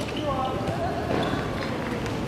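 Amateur football played on an outdoor hard court: a player's brief shout about a quarter second in, over the scuffle of running feet and thuds of the ball.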